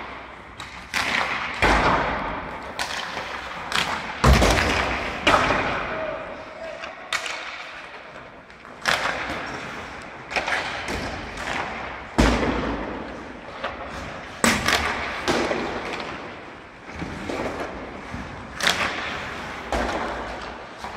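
Hockey pucks and sticks striking the boards and ice in an indoor rink: a string of irregular sharp knocks, about one a second, each echoing through the hall.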